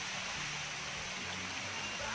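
Shallow stream water running over rock, a steady rushing hiss.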